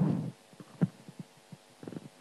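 Handheld microphone being handled and passed from one person to another: a few soft, short thumps on the live mic after the last spoken word dies away.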